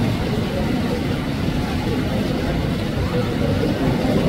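Steady rushing of water from a small waterfall into a rock pool, with faint voices underneath.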